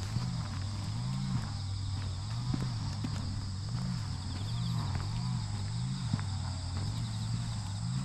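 Footsteps on an asphalt path, heard as scattered short knocks, over a steady high chirring of insects in the grass. The loudest sound is a low hum that swells up and down in pitch about every two-thirds of a second.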